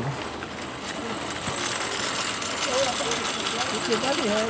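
Steady street background noise with no sharp events. A faint voice speaks briefly about three seconds in.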